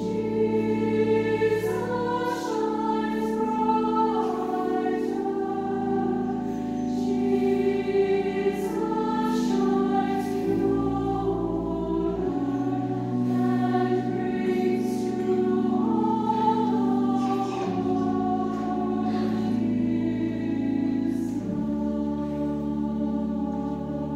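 Large mixed choir of men's and women's voices singing in parts, holding chords that change every second or two.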